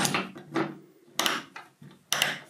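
Metal rail clamp being fitted into a thin aluminium curtain-track extrusion: a few light scrapes and clicks, with a sharp clack a little over a second in.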